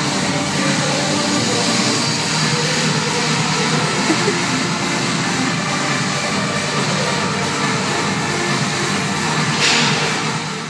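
Loud background rock music, dense and steady.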